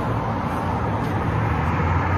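Road traffic going by: a steady rumble of car noise that grows a little louder near the end.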